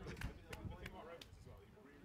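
Faint voices talking in the background, with a few short sharp clicks in the first second or so.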